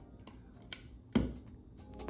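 A metal spoon scooping dense frozen chocolate ice cream in a plastic Ninja Creami pint: a few faint clicks and scrapes, one louder click about a second in.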